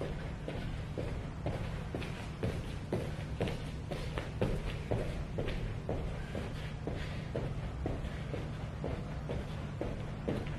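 Star jumps (jumping jacks): feet landing on the floor in a steady rhythm of about two landings a second, over a steady low hum.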